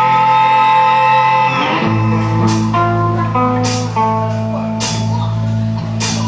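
Live rock band instrumental passage with amplified electric guitars, bass and drums. A chord rings out for the first two seconds, then the bass drops in under a stepping guitar riff while the drums hit an accent about once a second.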